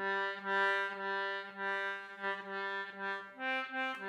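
Wheatstone Maccann duet-system concertina playing one low note, held steadily with several short breaks and re-soundings, then moving to a higher note about three seconds in.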